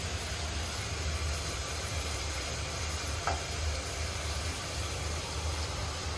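Steady hiss of a pot of vegetable curry cooking on a lit gas stove burner, with one light knock about three seconds in.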